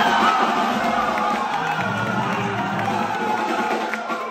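A group of people cheering and whooping over a saxophone that keeps playing, with a low steady note joining a little before halfway through.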